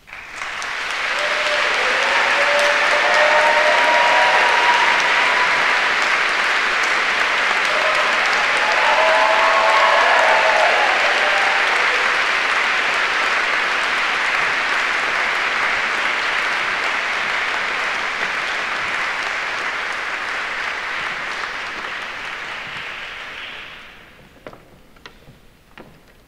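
Audience applauding: a full round of clapping that starts suddenly, holds strong, then slowly tapers off near the end.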